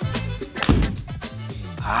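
Background music with a steady bass line, and about two-thirds of a second in a single sharp strike of a golf hybrid hitting a ball off a hitting mat into a simulator screen.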